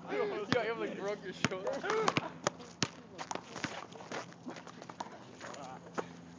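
A basketball dribbled on an outdoor asphalt court: a string of about eight sharp bounces at uneven spacing, with players' voices.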